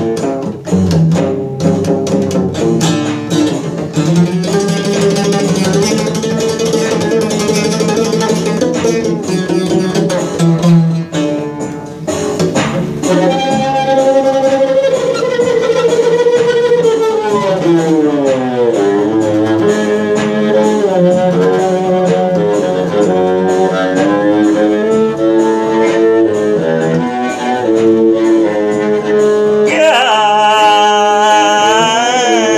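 Midget bass, a cello-sized bowed string instrument, played in a wild improvisation. It is plucked at first, then bowed, with a long downward slide a little past halfway, over a steady low note.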